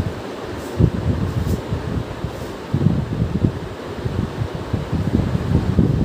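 Low, uneven rumble of moving air buffeting the microphone. There are faint squeaks of a marker writing on a whiteboard a few times in the first half.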